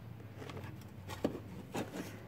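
Faint handling noise as a spray can is worked in under a scooter: a couple of light clicks about a second and a quarter and a second and three quarters in, over a low steady hum. No spraying is heard.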